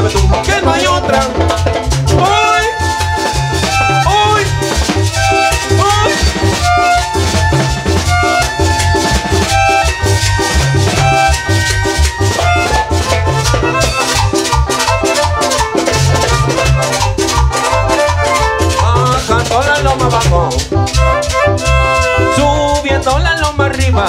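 Live chanchona band playing an instrumental stretch of cumbia: a gliding melody line over a steady, evenly pulsing bass, with continuous rattling percussion keeping the beat.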